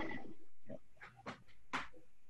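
California sea lions barking: about four short, faint calls in quick succession.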